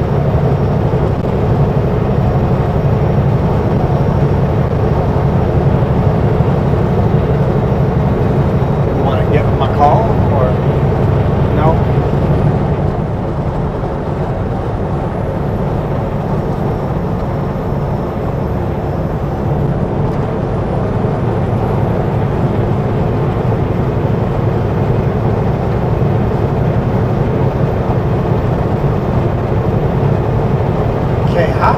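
Kenworth W900L semi truck driving down the highway: a steady diesel engine drone with road noise. It eases a little for several seconds about halfway through, then picks back up.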